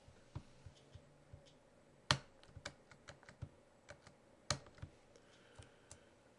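Faint computer keyboard typing: scattered, irregular key clicks, with two sharper clicks about two seconds and four and a half seconds in.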